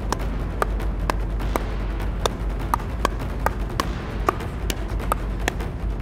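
Pickleball paddles popping against the ball in a rapid volley exchange, a sharp pop roughly every half second, over a steady low rumble.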